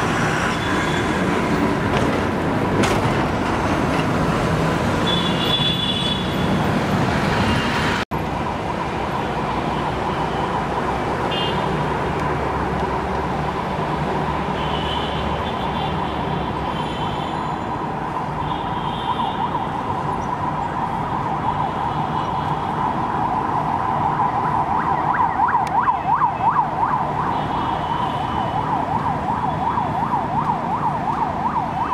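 A siren holding a steady tone, then growing louder and wavering quickly up and down near the end, over continuous city traffic noise.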